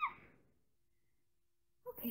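A woman's short, high vocal sound falling in pitch right at the start, then near silence, with her voice starting again near the end.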